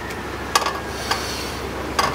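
Metal pot lid clinking lightly against a cooking pot, two short clicks about half a second and a second in, over a steady low hum.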